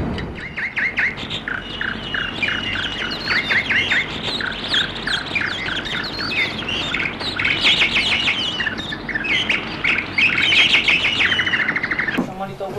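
Birds chirping: many short, quick notes overlapping one another, with a rapid trill near the end.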